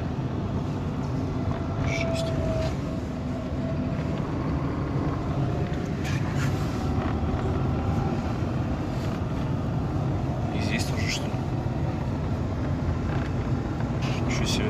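Inside a car driving on a snowy highway in a blizzard: steady low road and engine noise, with a brief high-pitched sound about every four seconds.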